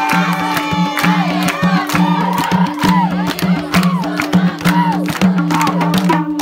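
Madal, the Nepali two-headed hand drum, played in a quick, steady folk rhythm with deep pitched strokes on its bass head, over hand-clapping and voices singing a dohori folk tune.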